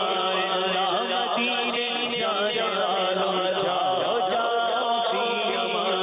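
A man's voice singing a naat, an Urdu devotional poem, in a slow ornamented melody with long held notes that bend in pitch, over a steady low drone.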